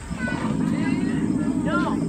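Animatronic dinosaur's recorded roar played through a loudspeaker: a low, rough, sustained growl that begins right away and lasts about two seconds.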